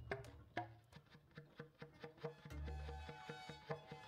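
Live jazz combo playing, the drums prominent with a steady run of quick strokes; a low bass note sounds about two and a half seconds in, with held keyboard tones above.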